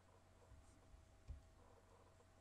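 Near silence: faint room tone with a steady low hum, broken by two soft low thumps, the louder one a little past the middle.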